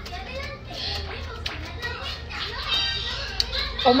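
Indistinct voices chattering, with a few sharp clicks, ending in a woman's loud exclamation, "oh my god."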